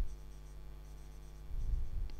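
Marker pen writing on a whiteboard, with a steady low electrical hum underneath. A brief low, muffled rumble comes in about one and a half seconds in.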